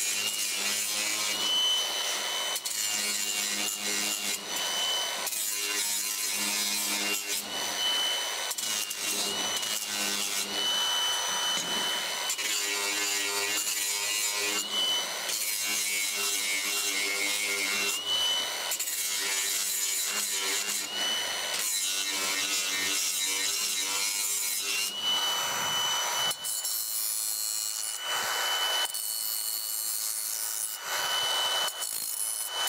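Cordless angle grinder grinding the edges of sheet steel to clean them up, working in repeated short passes, its motor whine dipping and rising as the disc bites the metal.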